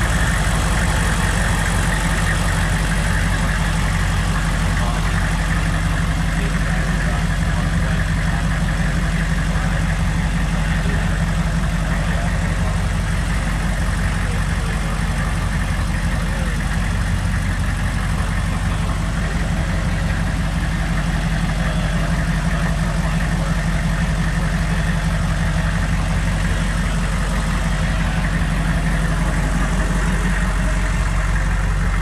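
A Hummer H1's engine idling steadily, an even low running sound that holds without revs or changes.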